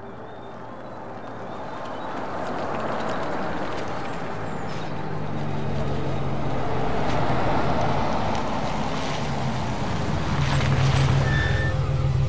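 A large vintage Mercedes-Benz 600 limousine driving up: engine and road noise grow steadily louder as it approaches, with a low engine hum coming in about halfway and strongest near the end as the car comes close.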